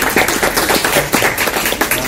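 Audience applauding: many quick, irregular claps overlapping.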